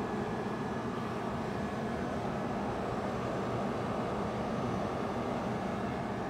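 Refrigeration condensing unit of a luggage X-ray machine running with a steady hum, while low on refrigerant charge and being topped up.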